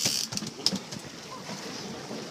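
Fishing reel's ratcheting buzz cutting off just after the start, followed by a few sharp clicks and then a soft steady hiss.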